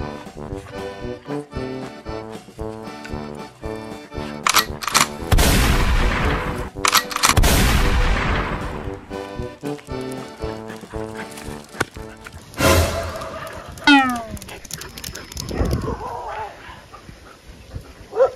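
Background comedy music interrupted by loud edited-in gunfire and explosion sound effects, a cluster of blasts about five seconds in, then more sharp hits and a falling sound effect near the end.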